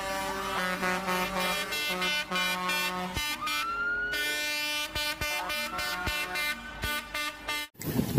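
Truck air horns sounding long, held chords that change pitch in steps, with a siren-like tone rising to a steady pitch about three seconds in and another shorter rise near five seconds.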